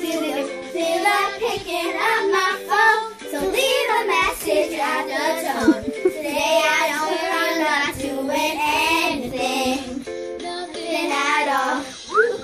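Young girls singing along to a pop song, with the song's music playing underneath.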